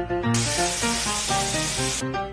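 Bathroom sink tap running onto a soaked cardboard toilet-roll tube, a steady hiss of water that starts a moment in, over background music.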